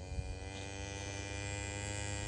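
A white Dexter cow giving one long, low moo held at a steady pitch, which the owner answers as the cow calling for her calf.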